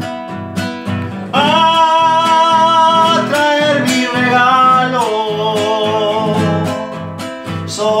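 Classical guitar strummed in a steady rhythm, with a man singing long held notes over it from about a second in until near the end.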